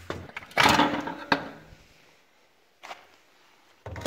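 Steel exhaust springs and the expansion chamber being worked off a two-stroke dirt bike: a short scraping rattle about half a second in, then a sharp click. Near silence follows, with a faint knock near the end.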